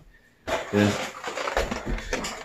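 Near silence, then a sudden, steady noisy handling sound about half a second in, under a man's couple of words.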